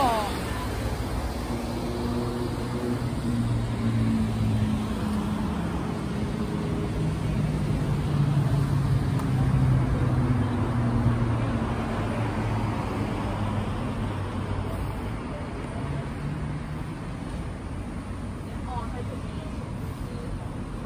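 A city bus's engine running as it pulls away from the stop, its low hum swelling and then fading over several seconds against steady road traffic noise.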